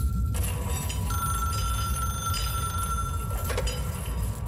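Old-fashioned telephone ringing with a steady high ring over a low rumble. The ring breaks off briefly just after the start, picks up again about a second in and stops with a click near the end.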